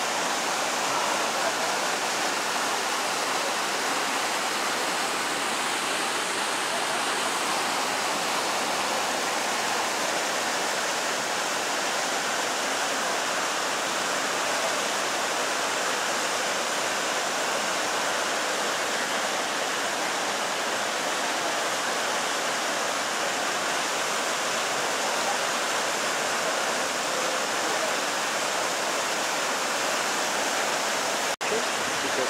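The Horcones River rushing over rocks and small cascades: a steady, unbroken wash of water noise.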